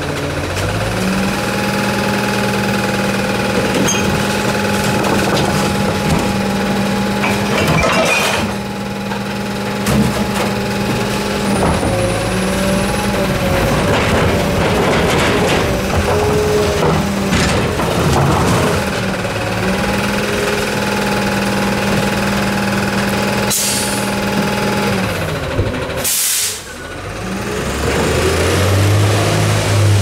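Natural-gas engine of an Autocar ACX garbage truck with a Labrie Expert 2000 side-load body, held at a steady raised speed in two long spells, as when running the body's hydraulics. Between the spells, recycling clatters as a cart is tipped into the hopper. Short air hisses are heard, the loudest a sharp air-brake release near the end, and then the engine pulls the truck away.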